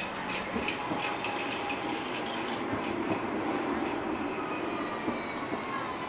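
A light rail tram running past on street track: wheel-on-rail rumble that swells in the middle, with a faint thin whine. A quick run of sharp clicks sounds over the first couple of seconds.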